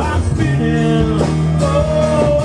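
Live acoustic rock band playing: strummed acoustic guitars, bass guitar and drums, with long held notes that change about every second.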